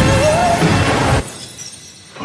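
A shattering crash over soundtrack music with a wavering held high note. Both cut off suddenly about a second in, leaving a fading echo.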